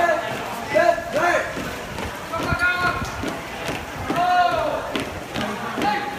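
Shouted drill calls from a squad of marching cadets, a few drawn-out voiced calls spaced a second or two apart, over the shuffle and tap of their marching footsteps.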